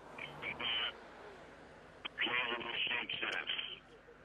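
Speech only: a man's voice coming over a phone or radio link, thin and cut off above the middle of the voice range, in a short burst and then a longer stretch of talk.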